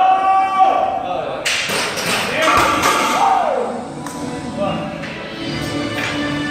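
Background music with singing, and about two seconds in a heavily loaded deadlift barbell is set down on the rubber lifting platform with a thud.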